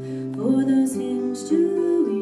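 A slow song performed live: acoustic guitar chords ringing under a woman's singing voice, which slides between long held notes with a few hissed consonants.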